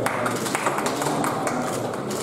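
Scattered hand clapping from a crowd, irregular sharp claps over a background of crowd voices.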